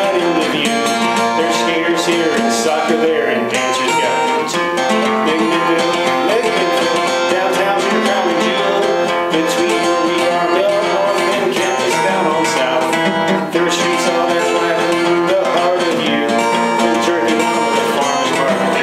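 Acoustic guitar strummed in a steady, driving country rhythm.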